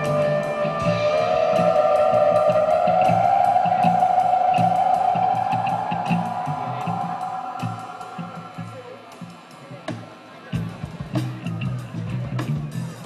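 Live band music: an electric guitar holds a long, effects-laden note that steps up in pitch about a second in, swells, then fades away, over a pulsing bass line and steady cymbal ticks. The full band comes back in just before the end.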